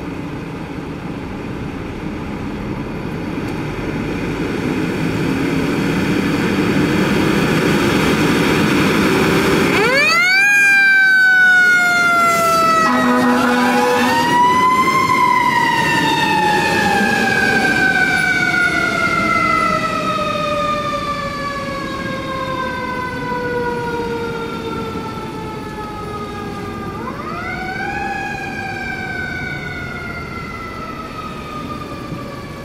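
2018 Seagrave Marauder fire engine pulling out, its diesel engine growing louder for about ten seconds. Then its mechanical siren winds up sharply, drops, winds up again and coasts slowly down over about ten seconds, and winds up once more near the end.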